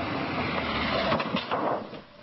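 A car driving into a man standing in the street, with several sharp knocks of the impact as he is thrown onto the hood, about a second and a half in.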